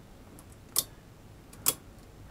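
Two sharp clicks about a second apart, part of an even ticking that carries on either side, over quiet room tone.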